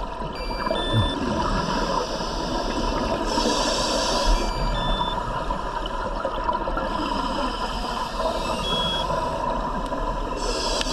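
Underwater camera audio of scuba divers: a steady underwater rush with a burst of exhaled regulator bubbles about three seconds in. A few short, faint high beeps sound now and then.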